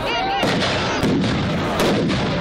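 Three sharp firework bangs, about half a second, one second and nearly two seconds in, over crowd voices.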